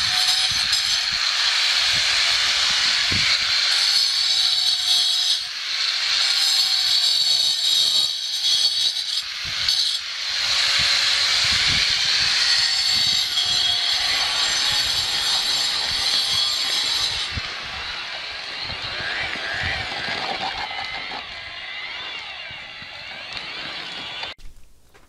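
Handheld corded power tool running under load against concrete, a steady high whine with two short dips. About two-thirds of the way in it gives way to a quieter electric drill turning a mixing paddle through concrete in a bucket.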